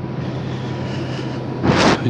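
Steady low electrical hum under a constant rushing noise, like ventilation fans running in a switchgear panel room. A brief burst of hissing noise comes near the end.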